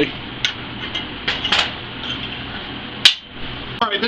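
A few light metallic knocks and clinks from a steel plate being handled in a bench vise, with one sharp clank about three seconds in, over a steady shop background hum.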